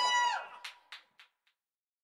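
The band's music ending: a held final note slides down in pitch and cuts off about half a second in, then a few short, fading clicks, and the track falls silent.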